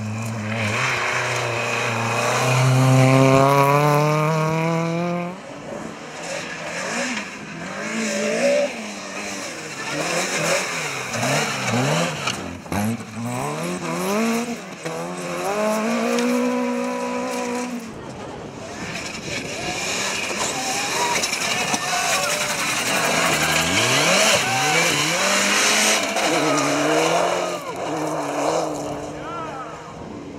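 Rally cars at full throttle on a gravel stage. One engine note climbs steadily for the first five seconds, then further cars pass with the engine pitch rising and falling through gear changes and lifts. Loose gravel is sprayed by the tyres, heavier in the second half.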